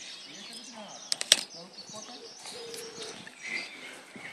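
Small birds chirping, with a quick cluster of three sharp clicks a little over a second in.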